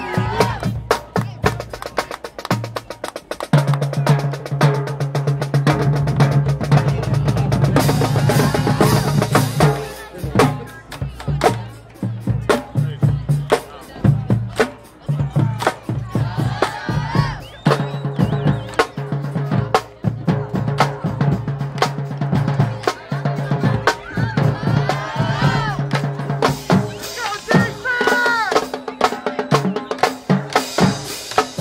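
Marching band drumline playing a cadence: fast snare strokes and rimshots over bass drum hits, with a held low note running under much of it.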